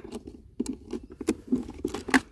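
Small clicks and scrapes of a metal key being fitted into the under-seat battery-compartment lock of a Hero Vida V1 Pro electric scooter, about half a dozen sharp ticks.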